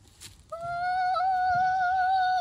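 A young girl's voice holding one long, high note that starts about half a second in and barely wavers, a sung exclamation.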